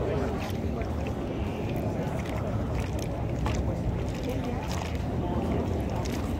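Busy pedestrian street ambience: scattered voices of passers-by over a steady low rumble of wind on the microphone.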